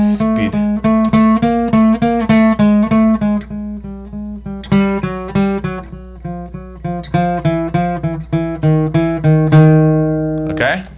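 Steel-string acoustic guitar playing a chromatic exercise as a run of single picked notes, about four a second, moving between louder and softer passages to practise dynamics. Near the end the last note is left ringing.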